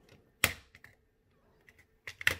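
Plastic shell halves of a Bluetooth cassette adapter snapping together under finger pressure: one sharp click about half a second in, then a few smaller clicks and faint ticks as the case is pressed into place.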